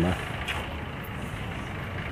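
Steady rumble of road traffic, with a faint click about half a second in.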